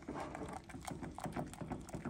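Silicone-coated whisk beating fast in a stainless steel saucepan of hot milk, stirring in chocolate chips, its wires tapping against the pan several times a second.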